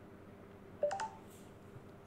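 A short electronic chime from an iPhone about a second in: three quick notes stepping up in pitch, over a faint steady hum.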